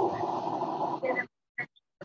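A burst of rough, crackly noise through a video call, about a second long, that cuts off sharply and is followed by a brief blip, like interference from a participant's open microphone.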